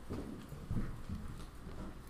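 Footsteps of a man walking across the floor to a pulpit: a few dull, low thuds.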